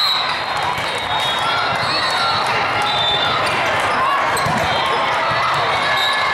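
Steady din of a volleyball hall during a rally: many overlapping voices of players and spectators, with short high squeaks of shoes on the court floor and the knocks of the ball being played.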